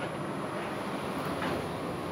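Steady background noise, a low rumble with hiss and a constant thin high-pitched whine above it.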